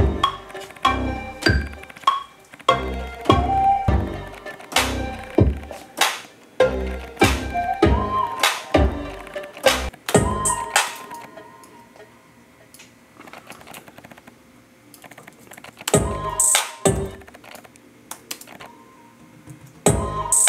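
A hip-hop/R&B beat under construction plays back: deep bass kicks and drum hits with a short melodic synth line. About halfway through it stops, leaving faint clicking, and a couple of loud drum hits sound again later on.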